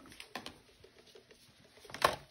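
Faint handling noise of plastic personal-care supplies being carried and moved: a couple of sharp clicks about a third of a second in, then light scattered taps.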